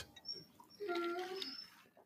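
A big dog in the background giving one short, pitched cry of under a second, about a second in, heard faintly.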